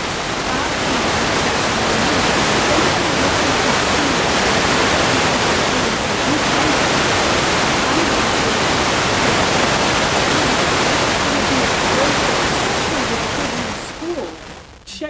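Loud steady hiss like static on the recording, with a woman's voice faintly audible beneath it; the hiss cuts off suddenly near the end.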